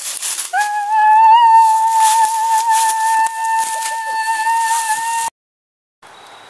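A long, high-pitched scream that rises briefly at its start, then holds one pitch for almost five seconds before cutting off abruptly.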